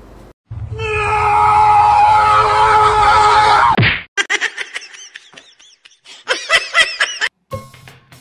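Music with comic sound effects: a loud held tone that ends in a quick downward slide about four seconds in, followed by a run of quick chirping notes.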